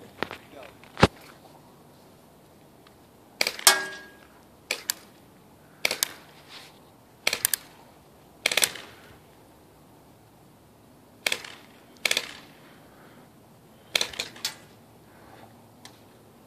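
HFC T77 airsoft Uzi firing single shots: about a dozen sharp cracks spaced irregularly, several in quick pairs, one followed by a brief ring.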